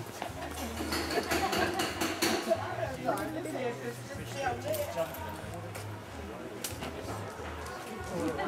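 Indistinct conversation of several people talking at once, with a few sharp clicks.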